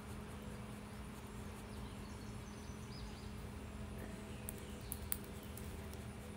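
Faint outdoor background: a steady low hum, with a few faint high bird chirps around the middle and some light clicks near the end.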